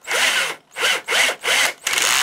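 12-volt cordless drill-driver powered from the 12 V rail of a PC switching power supply, its motor whirring up and down in about five short bursts while the chuck is held by hand. The clutch slips and clicks, a sign that the supply delivers enough current to trip the drill's clutch.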